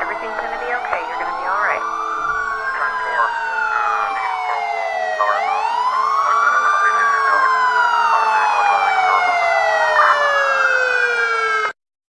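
Several emergency-vehicle sirens wailing at once, their pitches sweeping slowly up and down and overlapping. The sound cuts off suddenly near the end.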